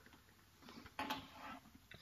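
Faint handling sounds of a flip-up motorcycle helmet being turned in the hands, with soft rustles and one short sharp click about a second in.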